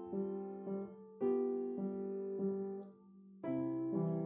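Piano music playing chords and melody notes, a new note about every half second, fading out briefly about three seconds in before the next chord is struck.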